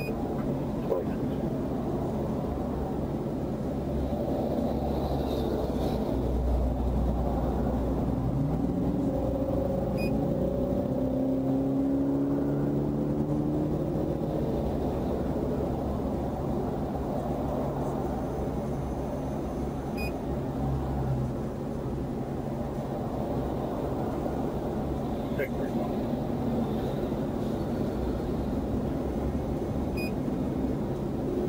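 Steady rumble of highway traffic passing close by, with a low engine hum underneath. About eight seconds in, a passing vehicle's engine note rises in pitch for several seconds.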